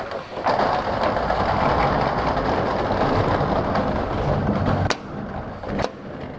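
Corrugated metal roll-up garage door being pulled down, rolling steadily for about four seconds and ending with a knock as it comes down near the five-second mark.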